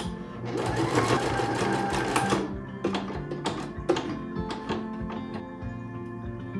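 Electric sewing machine stitching through fabric in a run of about two seconds, its motor speed rising and falling, followed by a few sharp clicks.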